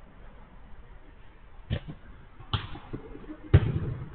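Three sharp thumps of a football being struck during play on a small-sided artificial-turf pitch, about a second apart, the third the loudest.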